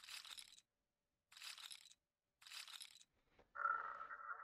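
The online roulette game's sound effect of casino chips clinking down onto the table, three times about a second apart, as bets are placed on the layout. Near the end a steady electronic chime begins.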